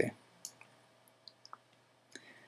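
A few faint, short computer-mouse clicks, spaced irregularly, as the mouse works sliders in editing software.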